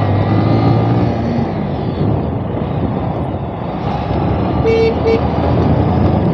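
Bajaj Avenger 150 Street's single-cylinder engine running at road speed, its note easing off over the first second and a half and then buried under heavy wind and road noise. Two short horn toots about five seconds in.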